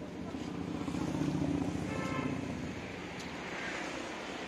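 A motor vehicle passing, its low engine rumble swelling about a second in and then easing off.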